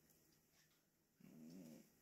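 Near silence of a room, broken about a second in by a short, low hummed "mmm" in a man's voice, lasting about half a second.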